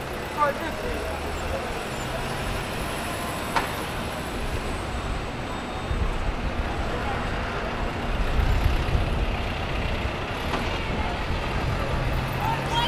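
City street traffic: motor vehicles going past, with a low rumble that grows louder from about six seconds in and peaks near nine seconds as a vehicle passes close by. A short sharp click about three and a half seconds in.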